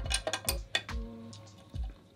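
Light metallic clicks and taps as M6 bolts and foil parts are handled and lined up against the fuselage, a few sharp clicks in the first second, over background music with a steady beat.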